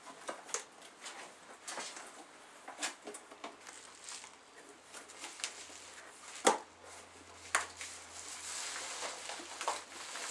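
Paper being handled and rustled, with scattered small clicks and knocks. A sharp knock about six and a half seconds in is the loudest, with another a second later.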